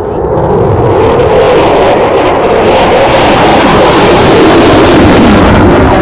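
F-16 fighter jet engine roaring as the aircraft flies its display pass, growing louder and brighter from about a second in.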